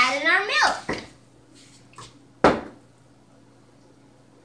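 A child's voice in the first second, then one sharp knock about two and a half seconds in: a dish or utensil set down on the kitchen counter.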